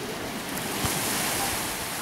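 Small sea waves washing onto a beach, the surf swelling in a rush of noise about half a second in and easing off toward the end.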